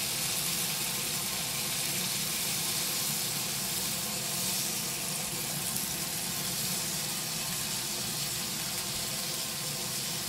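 Coated zucchini blossoms frying in oil in a nonstick skillet over lowered heat: a steady sizzle.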